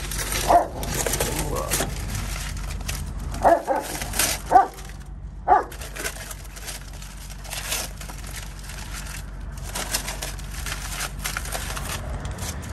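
Blue masking tape being peeled off a truck wheel and crumpled in the hands, a dense crackling and crinkling. A few short yelps stand out, with a steady low hum underneath.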